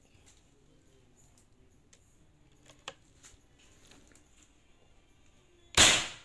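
A single loud, sharp shot from a PCP air rifle (a Marauder-type bocap) set to high power, near the end after a few seconds of quiet with faint clicks, with a short decaying tail.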